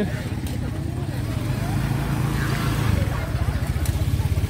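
Open-air market bustle: a motorbike engine running low and steady with a fast even pulse, under scattered voices talking in the background.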